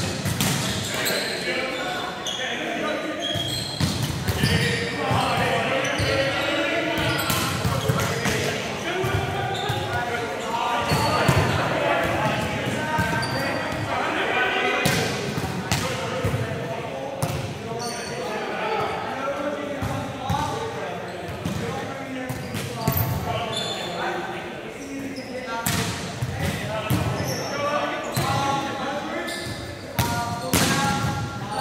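Volleyballs being struck and bouncing again and again on a sports-hall court, echoing in the large hall, with players' voices calling and chattering throughout.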